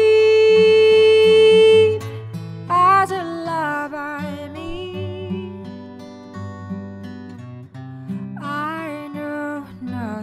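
A woman singing a slow ballad with acoustic guitar accompaniment. She holds one long note for about two seconds, then sings a line that falls away. The guitar carries on more quietly on its own before she comes back in near the end.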